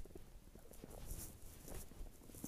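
Faint footsteps crunching in light snow, with the rub and rumble of a handheld phone moving.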